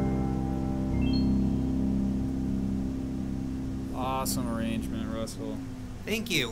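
Roland digital piano holding the final chords of a hymn: a chord rings and fades, a few soft high notes and a fresh low chord come in about a second in and then die away. A man's voice is heard briefly about four seconds in.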